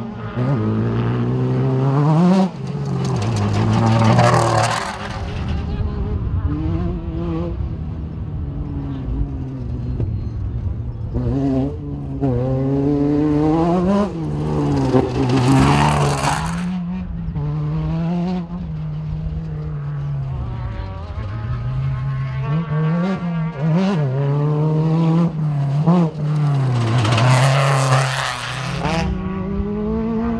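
Desert race vehicles' engines revving hard as they pass over a jump, the engine pitch rising and falling with the throttle. Three loud passes come about three seconds in, around the middle and near the end.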